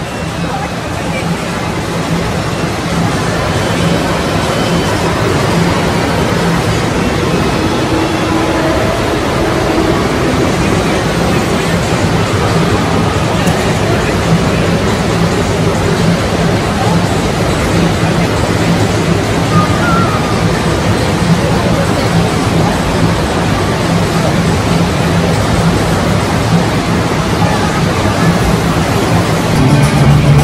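Steady wash of moving water with crowd chatter, echoing under the hall roof of an indoor water park, and faint music underneath.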